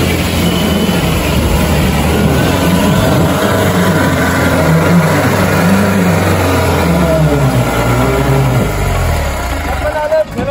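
Mahindra Bolero pickup's diesel engine labouring in deep mud, its pitch rising and falling as it is revved repeatedly, easing off near the end.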